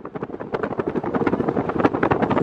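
Car driving along a dirt road with the window open: road and wind noise that pulses rapidly and evenly, a fast fluttering rhythm.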